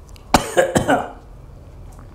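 An elderly man's short bout of coughing: a few quick coughs starting about a third of a second in and over within a second.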